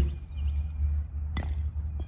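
A bat hitting a plastic wiffle ball once, a sharp crack about one and a half seconds in, over a steady low rumble.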